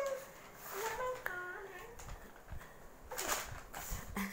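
Quiet, brief murmured voices of a child and an adult, with the papery rustle of a notebook page being turned.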